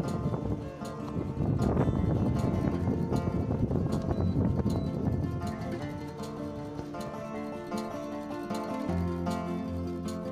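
Background music: a melody on plucked strings, with a pulsing low bass coming in near the end.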